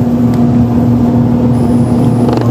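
Electric motor of an automatic churros extruding machine running with a steady hum as its screw auger feeds dough. A faint high whine joins in about one and a half seconds in.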